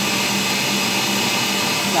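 Electric stand mixer running steadily, its wire whisk beating eggs and sugar into a foam: a constant motor hum with a higher whine above it.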